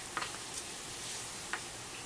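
Quiet room tone with two faint clicks just over a second apart.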